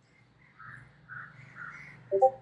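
Quiet background: a low steady hum with four soft, short sounds about half a second apart.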